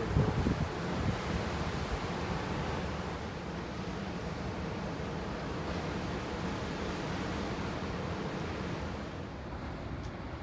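Steady rush of wind and breaking surf, with wind buffeting the microphone in the first second. The hiss eases a little near the end.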